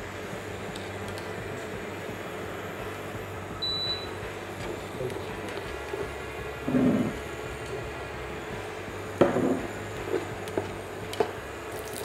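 Pine nuts toasting in a little oil in a nonstick frying pan on an induction hob: a steady low sizzle, with a spatula scraping and knocking against the pan now and then. A short high beep about four seconds in.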